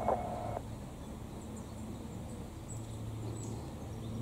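Faint, steady drone of a distant helicopter, its low hum growing a little stronger near the middle. A scanner radio's transmission cuts off about half a second in.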